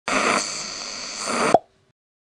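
Radio static sound effect: a hiss with faint steady high whistles, louder at its start and again near its end, cut off after about a second and a half by one sharp pop.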